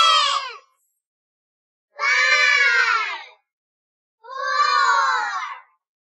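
A very high-pitched, squeaky singing voice calling out numbers one at a time in a slow a cappella countdown: three drawn-out calls, each about a second long with silence between, the pitch sliding down within each.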